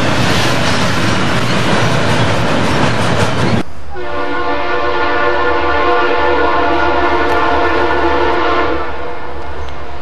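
Double-stack intermodal freight train rolling past close by with a rumble and rhythmic wheel clatter. After a sudden cut, a diesel locomotive's multi-chime air horn sounds one steady, held chord for about five seconds, stopping just before the end.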